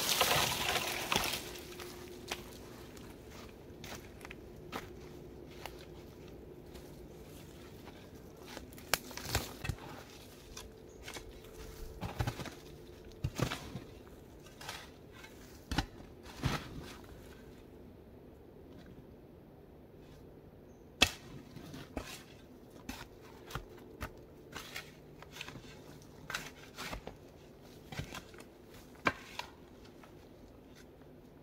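Shovel digging into loose forest soil and needle litter: irregular scrapes and thuds of the blade biting in and soil being tossed, one stroke every second or two. A louder rustling crash of branches fills the first second or so, and the sharpest single hit comes about two-thirds of the way through.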